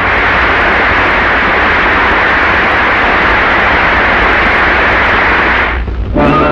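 Large theatre audience applauding steadily, a dense even clatter of clapping, cut off abruptly near the end.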